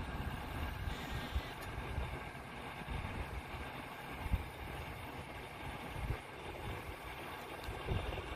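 Wind buffeting the microphone outdoors: a low, uneven rumble that comes and goes in gusts, with no clear animal calls.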